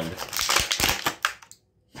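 Clear plastic blister tray of an action-figure package crinkling and crackling as the figure is pulled out of it, about a second of dense crackle that cuts off abruptly.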